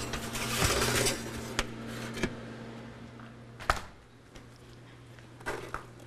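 Handling at an open stainless steel refrigerator: a rustling rush for about the first second, then a few light clicks and one sharper knock about four seconds in, as set dishes are taken out. A low steady hum runs underneath.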